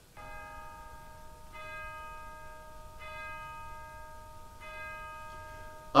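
Four bell chimes struck about a second and a half apart, each ringing on under the next.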